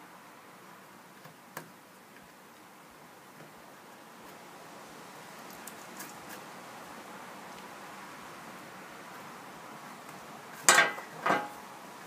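Soft, steady scraping of a small hand carving tool paring pine in the tight spaces between raised letters, with a few faint clicks. Near the end come two sharp clinks about half a second apart as metal tools knock on the bench.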